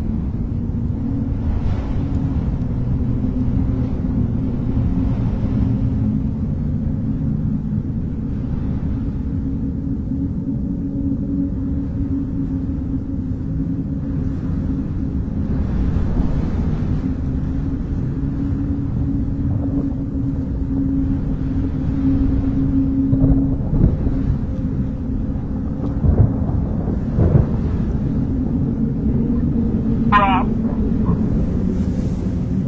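Low rumbling drone with a steady low hum, an ambient sound-design bed of the kind used in horror trailers, with a few dull low thuds in the last several seconds.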